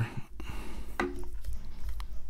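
Quiet handling of a small plastic earbud charging case in the hands, with a few soft clicks and taps.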